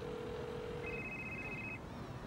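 Mobile phone electronic tones: a steady low tone for about a second, overlapped near the middle by a higher beep that stops shortly before the end.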